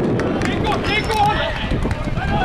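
Several voices calling and shouting over one another on and around a football pitch, picked up by an open-air microphone, with a low steady rumble beneath.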